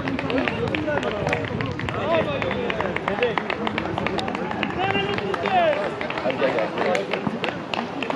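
Several voices shouting and calling over one another as players celebrate a goal, with scattered short sharp clicks.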